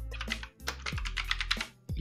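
Computer keyboard typing: a quick run of keystrokes spelling out a search term, over steady background music.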